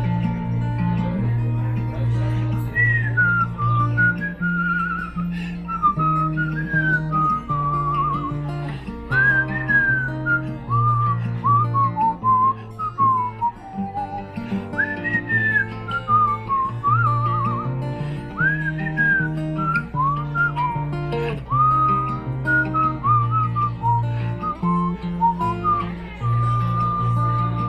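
A man whistling a melody into a microphone, with slides and quick wavering trills, over an acoustic guitar picking low bass notes: a whistled instrumental break between verses of a folk song.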